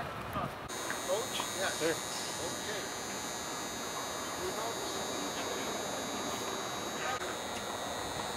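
Faint chatter and a laugh from people around, over a steady high-pitched buzz made of several constant tones that sets in abruptly about a second in.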